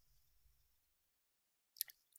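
Near silence: room tone, with a brief faint click near the end.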